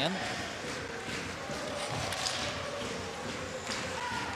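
Ice hockey arena sound during play: a steady crowd murmur, with skates scraping and sticks and puck tapping on the ice.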